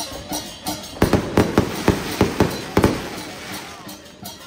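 A run of loud, sharp bangs, about four a second, starts about a second in over a steady beat. It trails off after about three seconds, leaving a hissing wash that fades.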